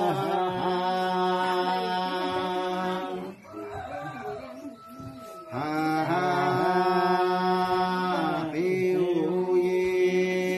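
A man chanting in long, held, slowly wavering notes. One phrase ends about three seconds in. After a quieter stretch he takes up another phrase at about five and a half seconds, and a third begins near nine seconds.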